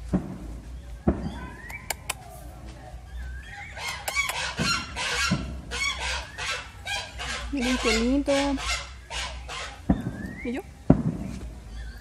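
Domestic geese honking, a rapid run of repeated calls from about four to nine seconds in.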